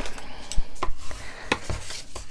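Bone folder drawn along the fold of cardstock to crease it: scraping and rubbing of paper, with a few sharp clicks and taps of card and tool on the tabletop.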